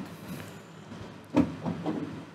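A man's voice: a short, sudden vocal outburst about one and a half seconds in, over a low room murmur.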